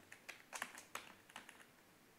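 A handful of faint, irregular clicks of a computer keyboard being typed on.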